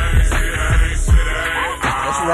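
Chopped-and-screwed hip-hop music: a slowed, pitched-down beat with deep bass kicks under a wavering, drawn-out vocal.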